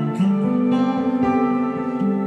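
Acoustic guitar playing a slow, gentle instrumental passage of a ballad, with new chords struck about a fifth of a second in and again a second later and left ringing.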